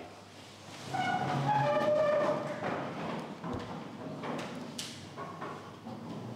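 Chair legs scraping on the floor as a roomful of seated people stand up. A squealing scrape starts about a second in and lasts about two seconds, followed by fainter shuffling and a few knocks.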